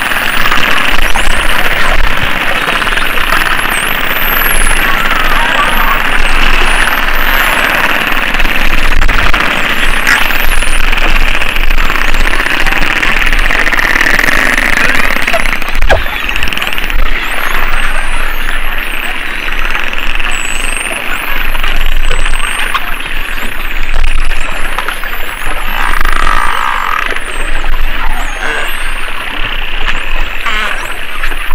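Spinner dolphins whistling underwater, many overlapping rising and falling whistles, thickest in the second half, over a steady rushing underwater noise of water and the boat.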